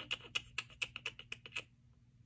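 Quick light tapping of long fingernails, about eight clicks a second, which stops shortly before the end.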